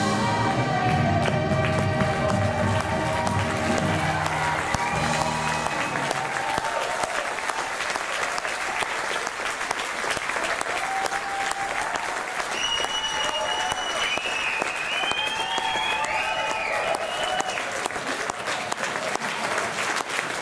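Choir and band holding their final chord, which cuts off about five seconds in, as audience applause swells and then carries on alone.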